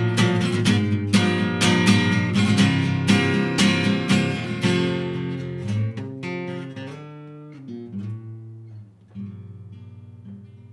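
Steel-string acoustic guitar with a capo playing the song's closing bars: chords strummed about twice a second, growing softer. About five seconds in the strumming stops, leaving a few quiet single notes and ringing chords that fade away.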